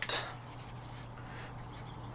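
Faint rubbing of palms rolling plumber's putty into a rope, over a steady low hum.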